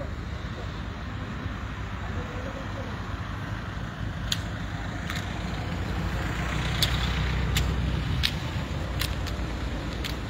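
Road traffic: a steady low rumble of passing vehicles, swelling as a car goes by about six to eight seconds in. A few sharp clicks sound over it.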